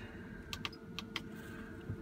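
About six light, sharp clicks, spread unevenly over two seconds, from a hand on the push buttons and plastic case of a Field Mate 3 seed-drill monitor. A faint steady hum runs underneath.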